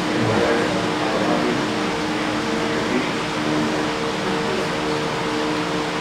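Many voices of a congregation praying aloud at the same time, a steady murmur with no single voice standing out, over a low held tone.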